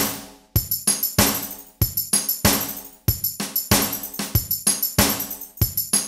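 Drum machine loop of kick, snare and tambourine hits, triggered over MIDI by a Groovesizer step sequencer. The flams are set as tempo-synced delays, so hits repeat in evenly spaced echoes that fade away.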